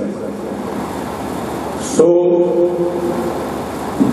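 A pause in a man's speech filled with steady background noise for about two seconds. The man then says a drawn-out "so" in Punjabi, held on one pitch before it fades.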